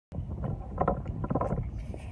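Wind buffeting a phone's microphone: an uneven low rumble, with a few brief knocks in the middle.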